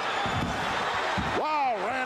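A couple of dull thuds of a wrestler's head being slammed down onto the ring canvas, over steady arena crowd noise.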